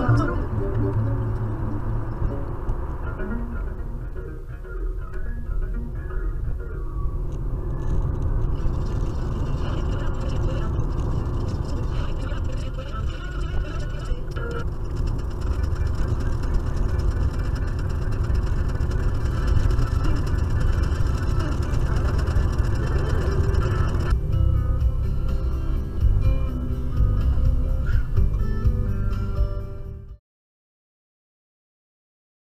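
Steady low road and engine rumble of a car heard from inside the cabin, with music and a voice playing over it. It cuts off suddenly at the end.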